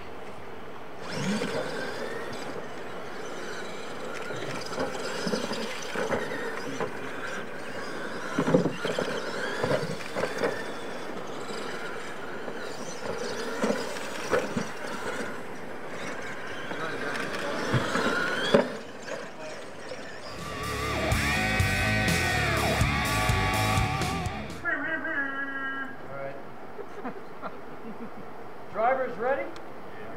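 Radio-controlled monster trucks racing on a sand track, their motors running and rising and falling in pitch for about 18 seconds. About 20 seconds in, a short burst of music lasts about four seconds.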